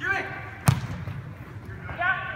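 One sharp thud of a soccer ball being kicked hard, about two thirds of a second in, just after a player's short shout.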